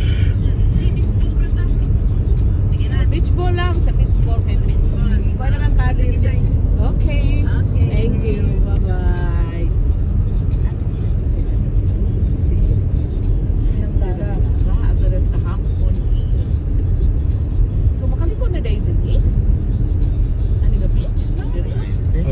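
Steady low road and engine rumble heard inside a moving car's cabin, with faint voices over it now and then.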